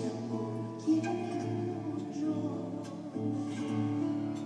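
Classical guitar accompanying a woman's voice in a live Argentine folk song. The guitar is strummed a few times and the voice holds long notes.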